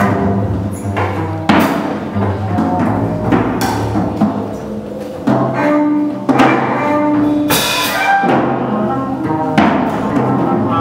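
Live jazz: a clarinet playing long held notes over a bowed double bass and drums, with several cymbal strokes.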